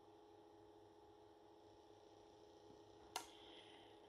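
Near silence: room tone with a faint steady hum, and one short click near the end.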